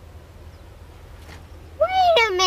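A steady low hum and hiss from an old video soundtrack. Near the end a child's high voice starts a loud sliding note that rises and then falls in pitch.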